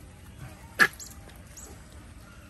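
A single loud, short, sharp animal cry a little under a second in.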